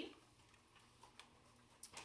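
Near silence: room tone with a few faint clicks in the second half.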